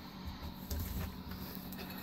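Faint low bumps and light knocks from a hand-held phone camera being moved about.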